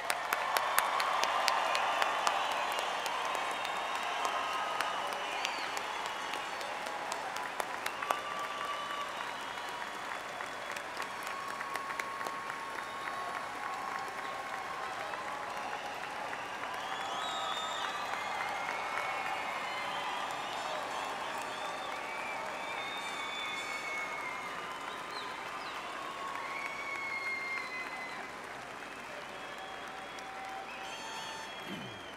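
A large arena crowd applauding, loudest in the first few seconds and then settling into steady clapping, with scattered voices calling out over it.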